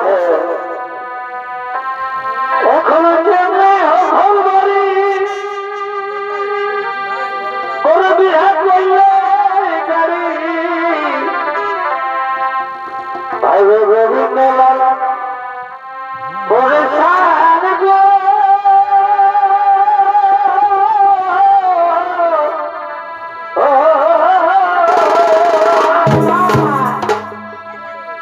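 Wind instruments of a chhau dance band, with a trumpet among them, playing a loud melody in phrases of a few seconds with brief breaks between them; the long held notes waver in pitch.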